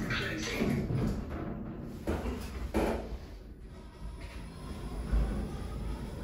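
Centre-opening lift car doors sliding the last few centimetres shut, then two short knocks about two and three seconds in, over a low steady hum and background music.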